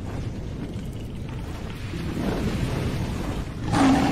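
Cinematic intro sound effect: a low, noisy rumble like thunder that swells gradually, then a louder burst near the end.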